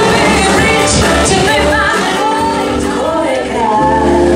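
A live jazz combo of saxophone, piano, electric bass and drums playing, with a bending lead melody line over the band.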